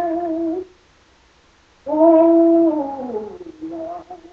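A woman singing a gospel song a cappella. A held note with vibrato ends, about a second of silence follows, then a loud note that slides down in pitch, and a shorter note near the end.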